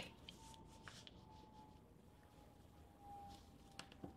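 Near silence, with faint scratches and light taps of a pencil drawn along a plastic set square on tracing paper.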